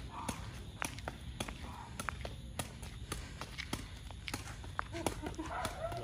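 Sepak takraw ball being kicked up repeatedly with the foot, a sharp tap about twice a second at an uneven pace, over a steady low rumble.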